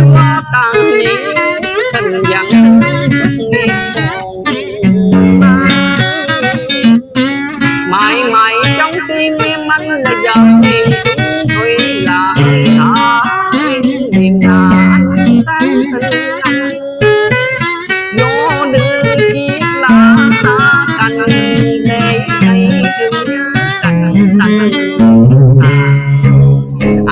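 Acoustic guitar playing a continuous melody full of bent and sliding notes over held low bass notes.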